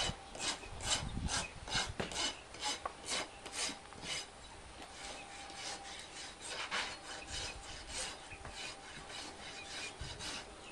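Farrier's rasp filing a horse's hoof in repeated strokes, about two a second, becoming lighter and quieter about four seconds in.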